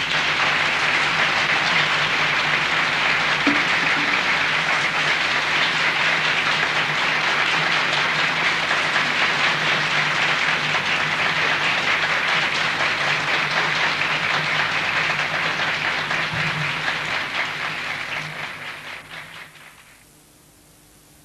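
Audience applauding, steady and dense, then dying away over the last two seconds.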